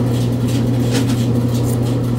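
Motor-driven corn mill running with a steady, unbroken hum as it grinds corn into masa.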